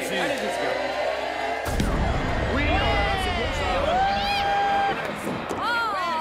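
A bowling ball lands on the lane with a knock about two seconds in, then rolls with a low rumble for about three seconds, under people's drawn-out exclamations.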